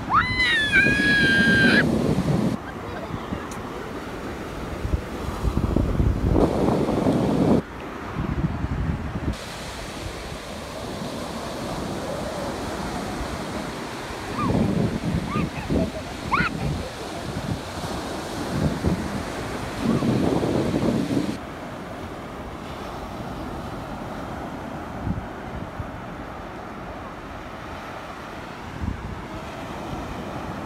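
Atlantic surf breaking and washing up the beach in a steady rush, with wind gusting on the microphone in heavy low rumbles near the start and again about six seconds in. A brief rising high-pitched cry sounds right at the start.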